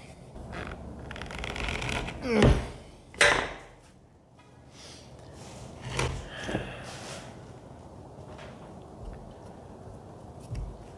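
Hand tools working a rusted, seized screw in a chrome bumper centerpiece plate: scraping, then two loud short sharp sounds about two and a half and three seconds in, and a couple of clicks near the middle as a screwdriver is set down on the metal piece.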